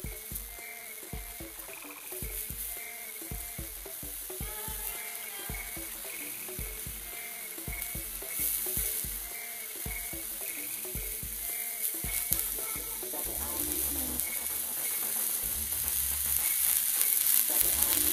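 Water droplets sizzling and spitting on a very hot electric hot plate: many short crackles over a steady hiss, growing louder toward the end. As the plate's heat is turned down the droplets lose the Leidenfrost vapour layer and boil away on contact with the plate.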